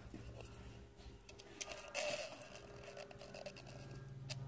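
A screwdriver tip scraping sludge off the pleated metal mesh screen of a reusable K&P oil filter, in a cluster of short scratchy strokes around the middle, the loudest near two seconds in. A steady low hum runs underneath.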